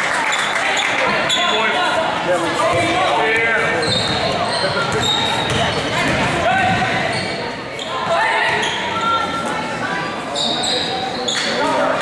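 Basketball game sound in a gym: spectators talking and calling out, the ball being dribbled, and short high sneaker squeaks on the hardwood court at several points.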